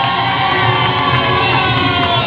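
A live band playing a worship song, with acoustic and electric guitars, and a crowd of voices cheering and singing along over a steady beat.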